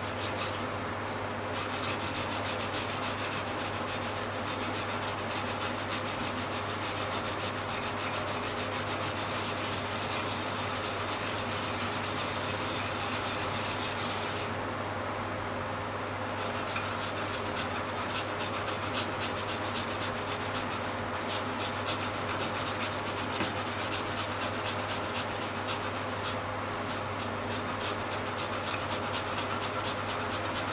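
Peeled mountain yam (yamaimo) grated by hand on a white grater: a continuous rapid rasping scrape of the yam worked back and forth across the teeth, with a short pause about halfway. A steady low hum runs underneath.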